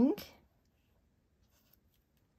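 Faint strokes of a black Posca paint marker on paper, edging a small stamped word label; very quiet apart from the pen.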